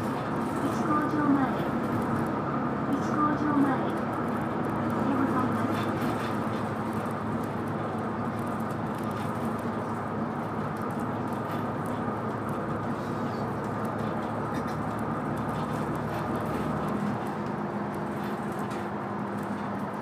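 Route bus's engine and tyre noise heard inside the cabin while the bus drives along at steady speed: a steady hum with road rumble underneath.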